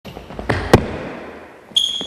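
Two sharp knocks, one just after the other, echoing in a large hall, then a high steady beep starting near the end.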